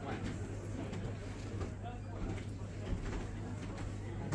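Indistinct background voices of other people in a shop, over a steady low hum.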